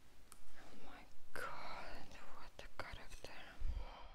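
A woman whispering softly, with a few sharp clicks in the second half and a low thump near the end.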